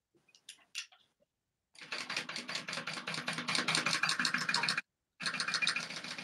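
Sewing machine stitching at a fast, even rate of roughly nine stitches a second, sewing clear vinyl onto zipper tape. After a few faint clicks it runs for about three seconds, stops briefly, then starts stitching again near the end.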